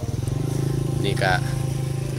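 An engine running steadily with an even, pulsing low hum.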